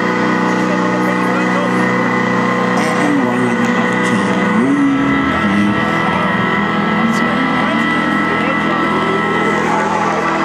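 Live rock band playing, with sustained chords and a slowly bending lead line held over them.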